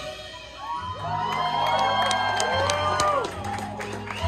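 Concert crowd cheering and whooping as a live metal song ends, starting about a second in with many voices at once. A low sustained note drones underneath.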